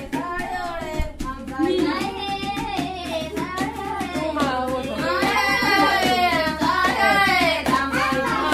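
Traditional Fulani song: several voices, children's among them, singing together in Fula over steady hand clapping.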